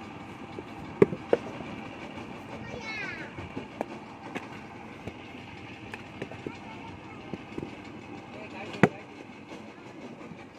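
Hand brick-making with a wooden mould and wet clay: a few sharp knocks as the mould and clay are handled, the loudest about a second in and another near the end, with smaller taps and scrapes between. A steady background hum runs under it, and a short falling chirp sounds about three seconds in.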